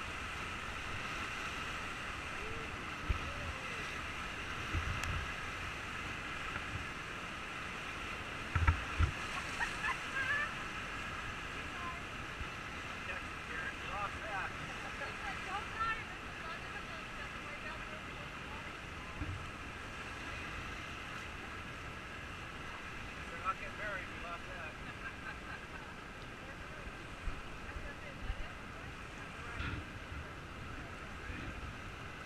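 Whitewater rapids rushing steadily around an inflatable raft, running fast at high flow, with occasional low thumps and bumps on the microphone.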